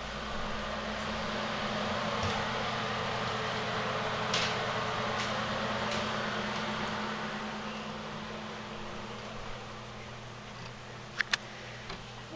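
A ventilation fan running with a steady hum and airy rush, swelling and then fading over the last few seconds. A faint tick comes about four seconds in and two sharp clicks near the end.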